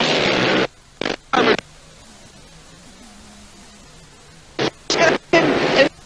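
Analogue video-tape dropout: loud fragments of the soundtrack cut in and out abruptly, with a low hiss and faint hum filling a gap of about three seconds in the middle.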